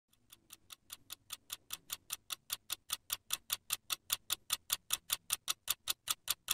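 Fast, even clock-like ticking, about five ticks a second, growing steadily louder.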